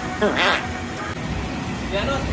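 A short, loud vocal outburst from a person, about half a second long, starting a quarter second in, followed by busier, quieter background sound.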